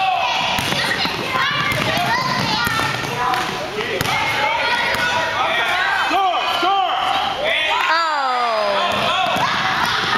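Basketballs bouncing on a hardwood gym floor under overlapping chatter and shouts of young children and adults, with one long falling shout about eight seconds in.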